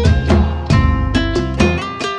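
Instrumental music led by plucked guitar notes over a low bass, several notes a second.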